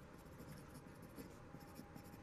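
Faint scratching of a pencil writing on paper, in short irregular strokes.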